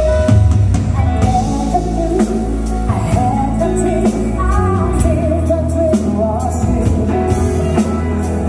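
Live pop-rock band playing, with a woman singing a drawn-out melody over electric guitars, bass and drum kit.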